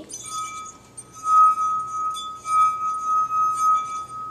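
A stemmed wine glass partly filled with water, made to sing by a fingertip rubbed around its rim, sounds one steady ringing tone on the note E. The tone begins shortly after the start and swells and fades several times.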